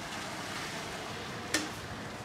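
Fresh milk pouring from a metal bucket into an aluminium milk can, a steady splashing rush, with one sharp metallic clink about one and a half seconds in.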